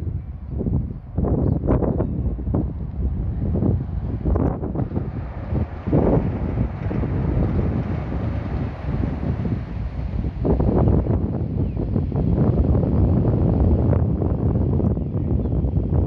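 Wind buffeting the microphone: a loud, low, gusty noise that swells and drops every second or two.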